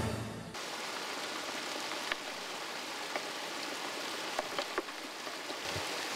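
Theme music cuts off in the first half second. Then muddy runoff water runs steadily over landslide debris, an even rushing sound with a few faint clicks.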